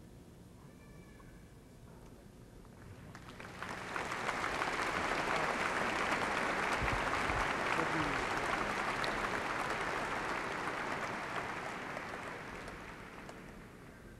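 Large audience applauding. It swells in about three seconds in, holds steady, then fades away near the end.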